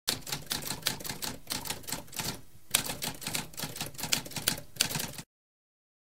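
Typewriter keys striking in a rapid run, with a brief pause about halfway through. The typing stops suddenly about a second before the end.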